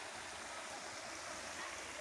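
Shallow river running over rocks: a steady, even rush of water.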